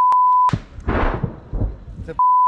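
A loud, steady one-pitch censor bleep for about the first half second, then a sharp crack and a rumbling blast that swells and dies away over about a second.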